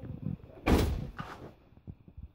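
A single loud bang about two-thirds of a second in, like a door being shut, followed about half a second later by a fainter knock, among small scattered knocks.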